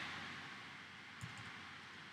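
Faint keystrokes on a computer keyboard: a light click or two about halfway through, over low room hiss.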